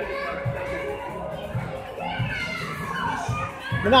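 Busy background din of many children playing and talking, with faint music underneath.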